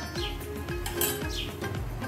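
A metal spoon clinking and scraping against an aluminium saucepan of milky tea as it is stirred, with background music.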